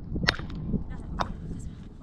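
Two sharp cracks about a second apart over a steady low rumble.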